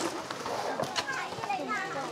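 Soft voices talking in the background, quieter than the conversation around them, with a couple of light taps about a second in.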